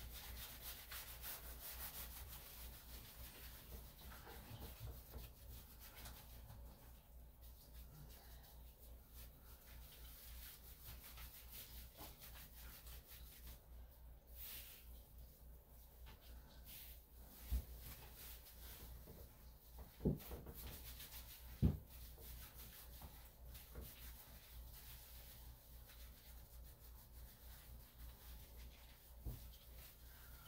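Faint, steady rubbing and scrubbing of hands working shampoo lather through a wet Maltese–Yorkshire terrier puppy's coat. Three brief knocks come a little past the middle.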